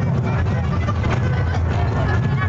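Crowd chatter over music from loudspeakers at a fireworks show, with scattered firework pops and crackles over a steady low rumble.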